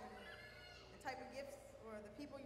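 Faint talking: a person's voice, its pitch rising and falling, with breaks between phrases.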